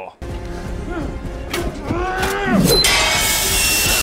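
Action-film soundtrack: music and voices, then a loud steady hiss from about three seconds in.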